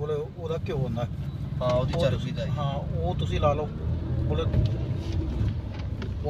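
Car cabin noise: a steady low rumble from the engine and road, heard from inside the car, with voices talking over it.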